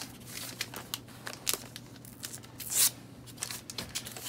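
Plastic shrink-wrap on a sealed box of trading cards crinkling as the box is turned over in the hands, in short scattered crackles with a louder rustle about three seconds in.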